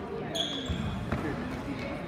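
Indoor youth basketball play: spectators' voices echo in the gym, a basketball bounces on the hardwood floor, and a brief high squeak comes about a third of a second in.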